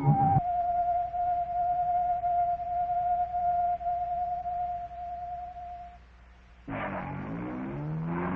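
A single sustained electronic music tone, held steady at one pitch and fading out about six seconds in. Shortly before the end a louder, noisier sound with several shifting pitches starts.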